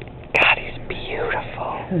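A person's soft, breathy laughter and whispered talk, with a sharp breathy burst about a third of a second in.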